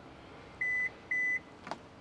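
Two short beeps from a 2022 Hyundai Tucson's power tailgate, each about a quarter second long and half a second apart. They signal that the tailgate's new opening height has been stored. A faint click follows near the end.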